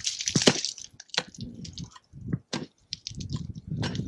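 Pickaxe chipping into clean ground ice in a frozen permafrost face: a string of irregular sharp strikes and crunches as ice chips and slabs break away.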